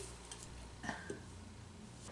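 Mostly quiet, with a few faint light taps as small plastic digging tools are handled on a tabletop.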